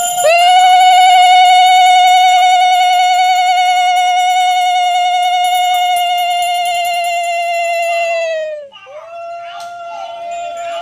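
Conch shell (shankha) blown in one long steady note with a slight wavering, held for about eight and a half seconds before its pitch sags and it breaks off; after a short breath a second blast begins near the end.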